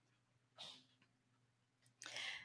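Near silence: room tone, with one brief faint sound about half a second in.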